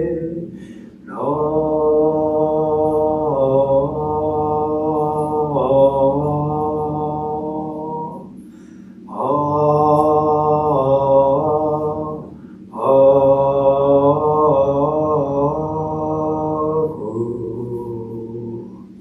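A male Jodo Shinshu minister chanting Buddhist liturgy solo in long, held, slowly moving tones, in three phrases with short breaths between them, about eight seconds in and about twelve and a half seconds in.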